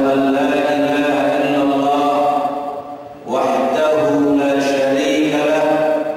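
A man chanting into a hand microphone in two long phrases, the notes held steady, with a short breath between them about three seconds in.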